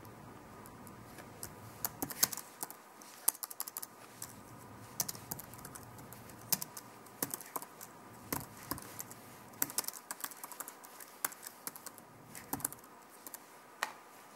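Typing on a computer keyboard: irregular runs of key clicks with short pauses between them, over a faint steady hum.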